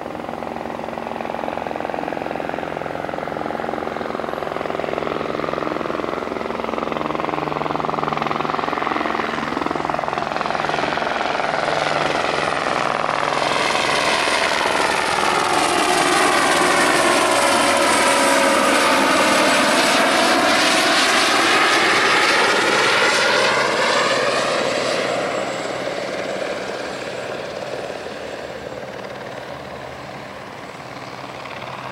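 Helibras AS350 B3 helicopter's single turboshaft engine and main rotor passing close by, with a high turbine whine. It grows louder to a peak a little after midway, then fades as it moves away.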